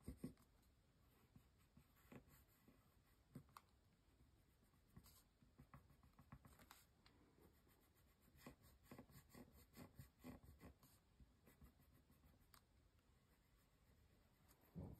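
Faint scratching of a dark pencil on paper as letters are drawn by hand, in short irregular strokes with brief pauses between them.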